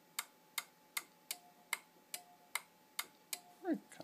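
Small 12 V relay clicking steadily, about two and a half clicks a second, as its armature pulls in and drops out in a capacitor-timed relay oscillator, switching the LEDs back and forth.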